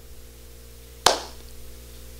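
A single sharp smack of the hands about a second in, dying away quickly, over a steady low hum.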